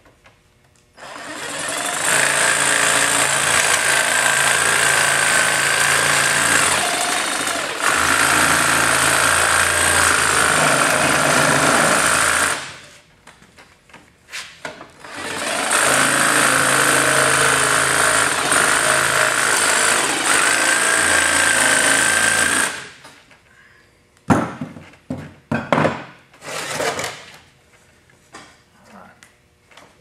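Jigsaw running as it cuts a side-port opening through a gas forge's sheet-metal top and liner, in two long steady runs of about eleven and seven seconds with a short pause between. Near the end come a few short, irregular knocks and scrapes.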